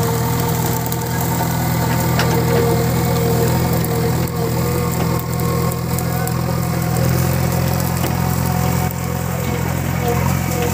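JCB 3DX Xpert backhoe loader's diesel engine running steadily, loud and unchanging in pitch.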